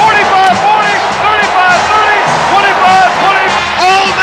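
Excited radio play-by-play announcer shouting a long touchdown run in a high, rising-and-falling voice, over loud music and crowd noise.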